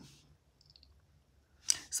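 Faint light clicks of tarot cards being handled on a tabletop, in a near-silent pause between words; a woman's voice starts again just before the end.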